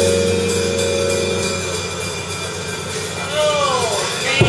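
The closing chord of a live piano, electric bass and drum-kit trio, held and fading away over about the first two seconds. Near the end a person's voice calls out, falling in pitch.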